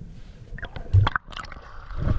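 Water sloshing and gurgling around a camera at the sea surface, with a loud low thump about a second in.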